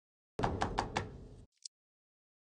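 A quick run of about four knocks, roughly five a second, trailing off within about a second, then one faint tick.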